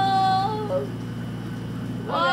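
The end of a long, drawn-out, high-pitched "nooo" from a young voice, held on one note and breaking off about half a second in. After it comes only a steady low room hum.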